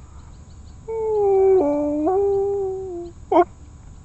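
Dalmatian puppy howling with a frisbee held in its mouth: one drawn-out call of about two seconds that dips in pitch midway and steps back up, then a short sharp yelp near the end.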